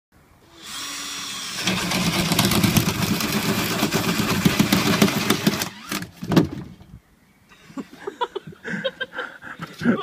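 Cordless drill boring a hole through plywood. The drill spins up briefly, then runs under load for about four seconds as the bit cuts, stopping around six seconds in with a knock. Laughter follows near the end.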